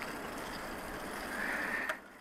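Steady, even rolling hiss of a Catrike Villager recumbent trike's tyres on a paved asphalt trail, with a short click near the end.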